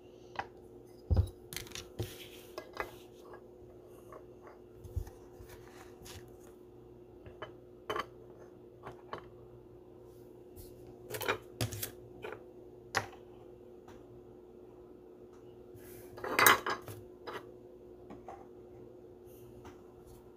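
Scattered hard plastic clicks and taps from rigid card top loaders and clear acrylic card stands being handled and set down on a wooden table. There is a duller thump about a second in, a bunch of clicks a little past the middle and another near the end, over a faint steady hum.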